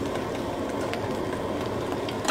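Two eggs frying in plenty of butter in a pan over a gas burner, a steady sizzle with a faint click about a second in.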